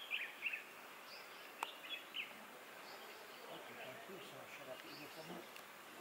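Faint outdoor ambience: scattered short, high chirps over a steady hiss, with a single sharp click about one and a half seconds in.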